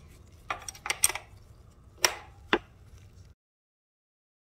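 Sharp metallic clicks and clinks of a wrench working the chain adjuster bolt at a motorcycle's rear axle, about five in two seconds, before the sound cuts off to dead silence.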